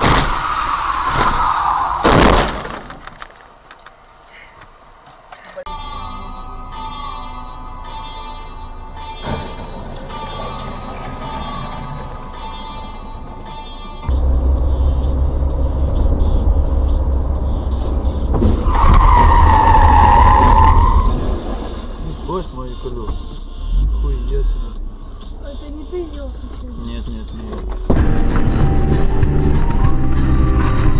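Car dashcam audio: a tyre squeal falling in pitch and ending in a sharp knock about two seconds in. Later there is heavy road and engine rumble, with a second, long tyre squeal about twenty seconds in.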